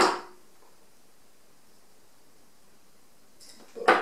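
A single steel-tip dart, a 23 g tungsten Harrows Dave Chisnall, striking a dartboard: one sharp thud at the very start that dies away quickly, then quiet room tone.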